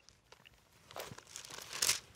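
Thin Bible pages being turned by hand: a soft paper rustle that starts about a second in, with a crisper flick of a page near the end.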